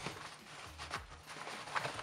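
Faint rustling of a canvas messenger bag's fabric as hands hold open a zippered inner pocket, with a few soft handling sounds.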